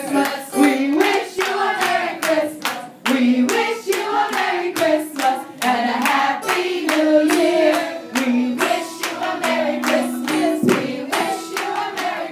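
A choir of girls and women singing, led by a woman's voice on a microphone, with steady hand-clapping in time, about two to three claps a second.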